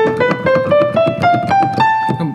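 Keyboard playing an A natural minor scale, A up to A on the white keys with no sharps: eight notes climbing one step at a time, about four a second, the top A held.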